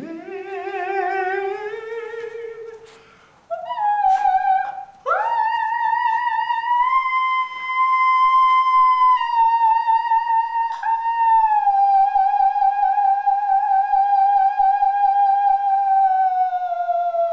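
Dog howling along: a wavering voice rising over the first few seconds, then long, smooth, sustained howls that hold a pitch for seconds at a time and sink slowly near the end.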